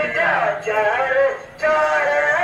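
A man singing a devotional naat in long, wavering melodic lines, with a short break about one and a half seconds in.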